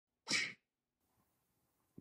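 One short, sharp burst of breath-like noise about a quarter second in.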